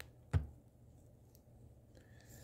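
One sharp metallic click about a third of a second in, from a GY6 50cc (139QMB) camshaft and its bearings being set down and handled on the cylinder head. Otherwise only a faint steady hum.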